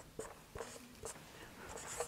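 Dry-erase marker writing on a whiteboard: a few faint short strokes and squeaks as letters are drawn.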